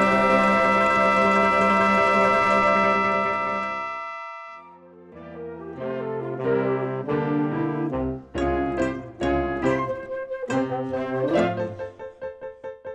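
A band's brass section holds a full sustained chord that fades away over about four seconds. After a brief dip, a new instrumental passage of separate, sharply starting notes begins.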